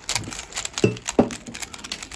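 A 3x3 Rubik's cube being scrambled by hand: quick plastic clicks and clacks as its layers are turned, with two brief louder sounds about a second in.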